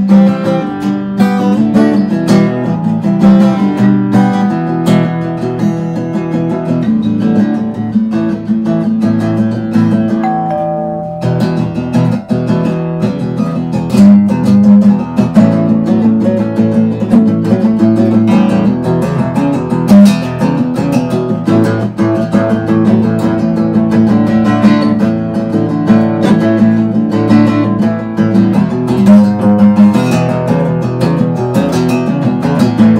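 Acoustic guitar played alone, a mix of picked notes and strums. A little over ten seconds in, the playing eases to a held, fading note, then picks up again, louder, a few seconds later.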